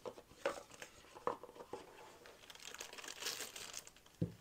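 Clear plastic wrapping crinkling faintly as a folding knife is unwrapped, with a few light taps in the first half.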